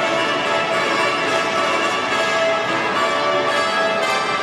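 A peal of bells ringing over music.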